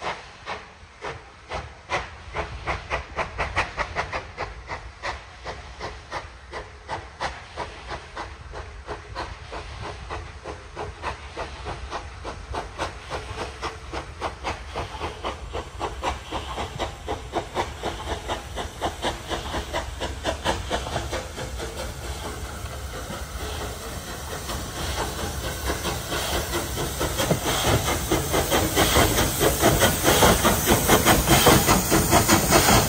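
Bulleid three-cylinder light Pacific steam locomotive 21C127 pulling a train away: a rapid, even chuff of exhaust beats over a steady hiss of steam, the beats coming quicker and growing louder as the engine draws near.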